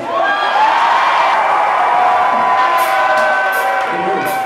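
A concert crowd cheering and screaming loudly in a hall, many voices blending into one sustained roar, with a few sharp high clicks near the end.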